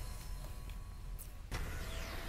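Broadcast logo-transition sound effect: a low hum, then a whoosh that comes in suddenly near the end and falls in pitch.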